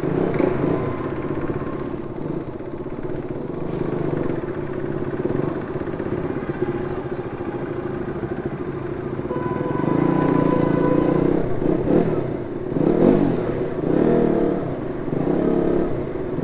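KTM Duke 200's single-cylinder engine running at low speed in slow traffic, its revs rising and falling a few times in the second half.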